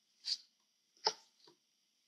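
Faint handling noise of sheer ribbon and cotton handkerchief fabric as fingers work a knot: three short soft rustles, the loudest just past a second in.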